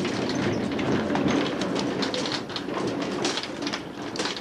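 Resort trolley running along its track: a steady rumble of steel wheels on the rails, with frequent clicks and rattles throughout.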